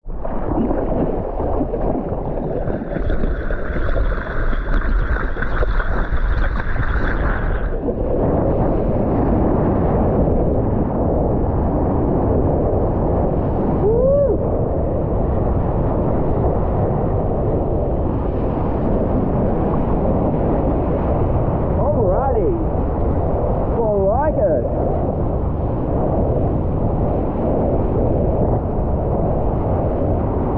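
Water rushing and sloshing against a longboard close to a board-mounted action camera as the surfer paddles out, with a few brief gurgling glides. The sound is muffled, with little in the highs.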